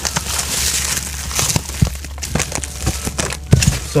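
Bubble wrap being handled and unwrapped, crinkling throughout with a few sharp crackles and knocks, most of them in the second half, over a low steady hum.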